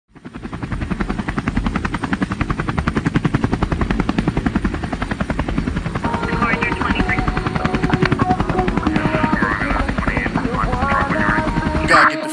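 A fast, even, low chopping pulse like helicopter rotor blades, fading in from silence at the start. From about halfway, higher musical tones and voices come in over it.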